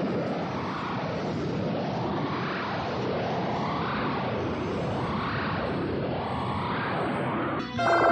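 Cartoon energy-beam sound effect: a loud rushing noise that swells up and falls back in pitch about every second and a half, with a brief break near the end.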